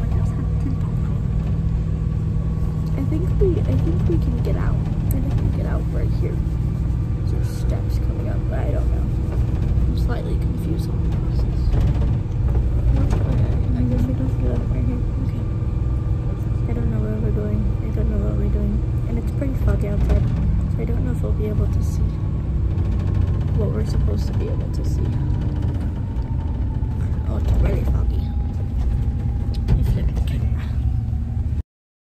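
Inside a shuttle van climbing a mountain road: steady low engine and road rumble with a faint steady whine, which sinks a little in pitch near the end.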